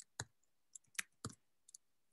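A few faint, irregular computer keyboard keystrokes, about six clicks spread over two seconds.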